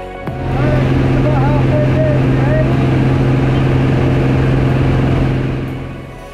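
Single-engine light aircraft's engine and propeller drone heard from inside the cabin, a loud steady low hum with rushing air noise over it. Music fades out just after the start and comes back in near the end.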